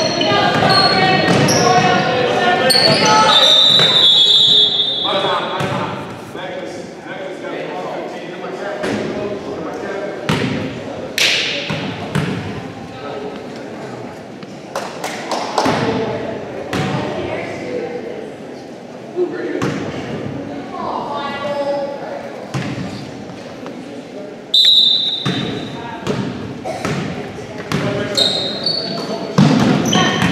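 Basketball bouncing on a hardwood gym floor, mixed with scattered voices, all echoing in a large gym.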